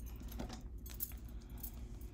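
Tarot cards being handled and laid out on a cloth-covered table: a few light clicks and taps, with a faint metallic jingle from bracelets and rings on the dealing hand.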